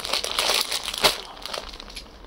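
Clear plastic packaging of packed sarees crinkling as they are handled and stacked, with a sharp crackle about a second in, fading toward the end.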